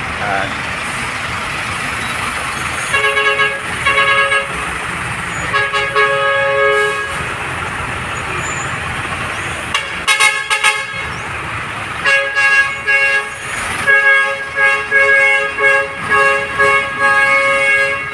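Truck horns tooting repeatedly over the running engines of a convoy of heavy dump trucks. The first held toots come a few seconds in, with another around the middle, and a run of quick short toots fills the last third.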